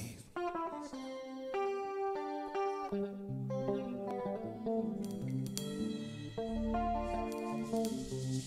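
A live band starting a slow song: a clean plucked guitar melody, with electric bass guitar joining about three seconds in.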